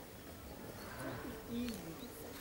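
A dove cooing, low and smooth, from about a second in, with faint voices beneath.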